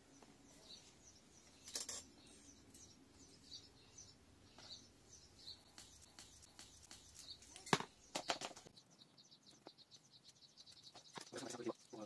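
Soft handling sounds of potting soil being added to a small plant pot with a hand trowel: a few light knocks and scrapes, one near 8 s the loudest. Faint bird chirps in the background.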